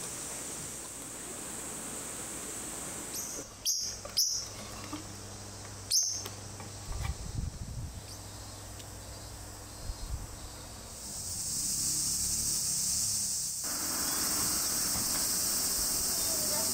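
Steady high insect buzzing that grows louder and fuller from about eleven seconds in. A few short, sharp high sounds come around four to six seconds in.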